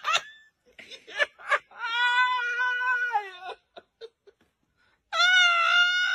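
High, drawn-out cat-like wailing cries: a few short yelps, then a long held wail of about two seconds that drops at its end, a pause, and a second long, slightly higher held wail.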